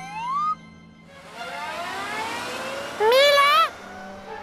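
Cartoon magic-transformation sound effects: a rising whistle-like glide, then a sparkly shimmer with faint upward sweeps, followed about three seconds in by a short high-pitched cartoon creature call.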